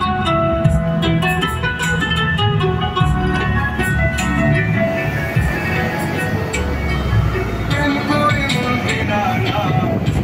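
Background music, a melody of changing notes over a steady low part.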